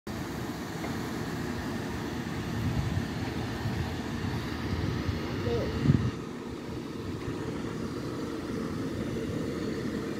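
Continental Rail class 256 locomotive running close by: a steady low rumble, with a brief louder sound about five and a half seconds in, after which it is a little quieter.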